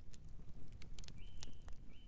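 Intro sound effect under a 'loading' title card: faint scattered crackling clicks over a low rumble, with two short high beeps, one about a second in and one near the end.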